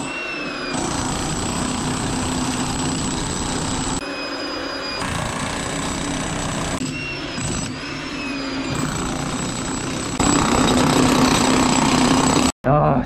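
Hilti TE 800-AVR electric demolition hammer chiselling continuously into a very hard concrete floor under bathroom tiles. The hammering runs without pause and gets louder for the last couple of seconds.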